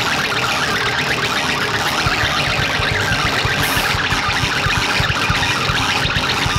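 Live band of electric bass, drums and keyboards playing a loud, dense, noisy passage; a fast low pulsing comes in about two seconds in.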